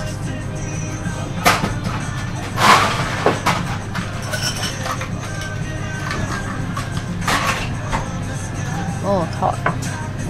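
Background music and restaurant chatter, broken by a few short clatters and knocks, the loudest about two and a half seconds in.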